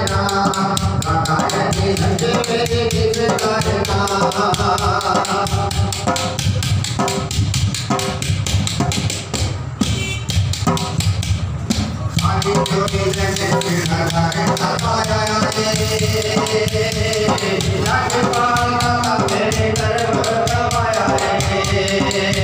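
A man singing a Sufi devotional kalam, his voice held on long sung notes through a microphone and PA. Under the voice, a hand drum is beaten with bare hands in a fast, steady rhythm.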